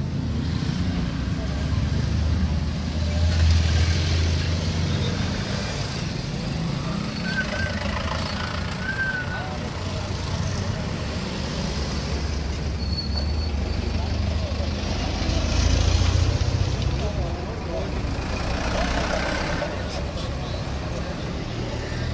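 Road traffic on a bridge: motor vehicles rumbling past, with two heavier vehicles swelling loudest about four seconds in and again around sixteen seconds. Faint voices are mixed in.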